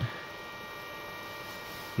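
Draper Expert 80808 induction heater running, a steady electrical hum with several faint high steady tones, while its coil heats a rusted exhaust clamp bolt to red heat.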